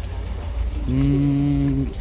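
A man's voice holding one low, drawn-out vowel for about a second, a hesitation sound before speaking, over a steady low rumble.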